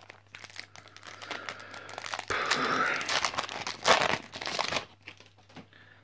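Foil wrapper of a Yu-Gi-Oh booster pack crinkling and being torn open by hand, with scattered crackles and the loudest tearing about two and a half and four seconds in.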